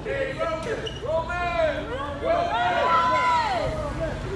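Several people shouting and calling out in high, raised voices, the calls overlapping, each rising and falling in pitch, busiest in the second half.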